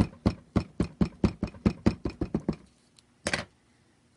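Memento ink pad tapped repeatedly against a rubber stamp on an acrylic block to ink it, quick light taps about five a second for two and a half seconds, then a brief scuff near the end.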